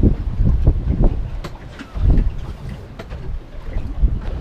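Wind buffeting the microphone on an open boat at sea, a low rumble that swells and eases, with a few faint clicks.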